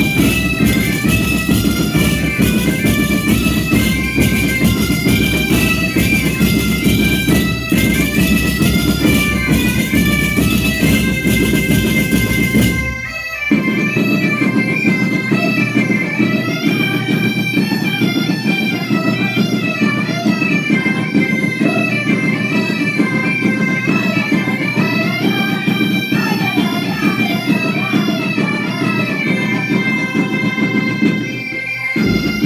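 Galician bagpipes (gaitas) playing a lively folk melody over their steady drone, with bass drums and percussion beating along. About thirteen seconds in the band breaks off for a moment, and the pipes carry on without the drums.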